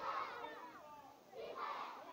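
A large group of young schoolchildren shouting together in unison in short bursts: one trails off in the first half-second and another comes about a second and a half in.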